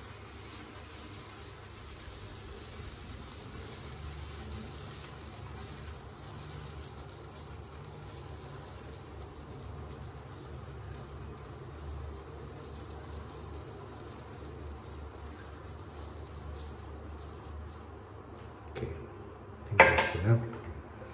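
Synthetic shaving brush swirled over a very hard puck of shaving soap to load it: a steady brushing, scrubbing noise. A couple of sharp knocks near the end.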